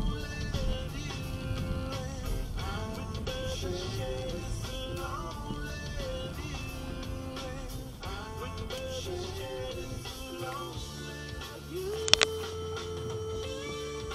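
A 90s rock song with guitar plays on a car radio. Near the end there is a sharp click, and then a steady held tone.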